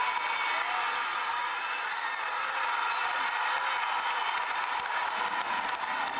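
Large football stadium crowd cheering, many voices blended into one steady wash of noise.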